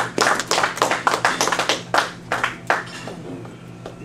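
Small audience applauding, the separate hand claps easy to pick out, dying away about three seconds in.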